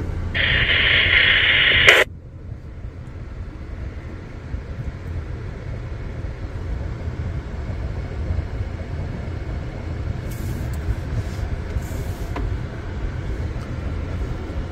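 About two seconds of loud hiss-like static from the Retevis RA86 GMRS mobile radio's speaker after a radio check, cutting off abruptly: the repeater answering with a noisy tail, a sign the radio is only barely tripping the distant repeater. After that a steady low rumble of the car cabin.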